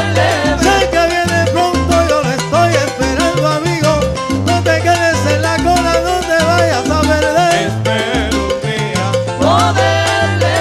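Live salsa band playing: a repeating bass line under congas, timbales and keyboard, with pitched lines sliding up and down above.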